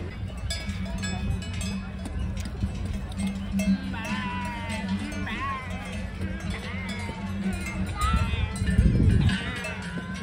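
Cowbells on livestock clanking irregularly, many short metallic strikes with a ringing tone, over voices in the background. A low rumble swells near the end.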